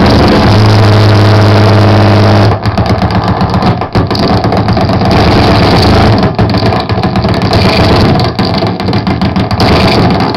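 Harsh noise music played live at high volume: a dense wall of distorted electronic noise. It opens with a steady low hum under the noise, then turns choppy and stuttering about two and a half seconds in.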